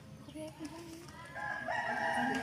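A rooster crowing: one long, drawn-out call that starts about a second and a half in, over faint voices.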